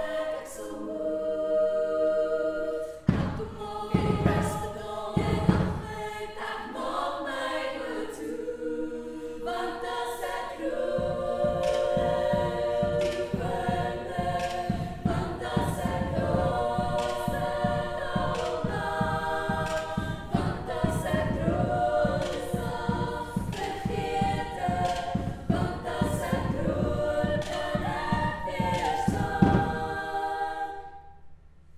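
Women's a cappella ensemble singing in close harmony. A few heavy low beats come about three to six seconds in, and from about eleven seconds a steady low pulsing beat runs under the voices.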